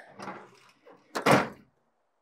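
Steel tailgate of a Mitsubishi Triton ute being lifted and slammed shut: a little handling noise, then one solid slam a little over a second in.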